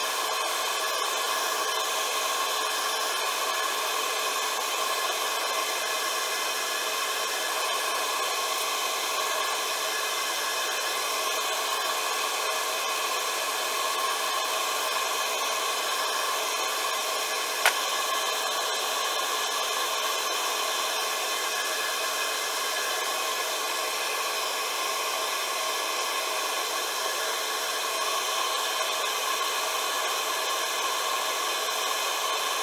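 Wood lathe running at a steady speed, a constant whine from its motor and drive, while a resin piece spinning on it is sanded and then polished by hand. There is one sharp click about two-thirds of the way through.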